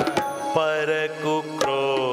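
Devotional kirtan sung to harmonium, bansuri flute and tabla, with sharp tabla strokes through the held, gliding notes of the melody.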